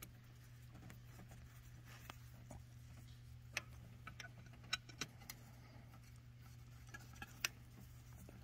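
Faint, scattered small metallic clicks and ticks of screws being started by hand with a nut driver into a metal cover plate on an engine's intake plenum, over a steady low hum.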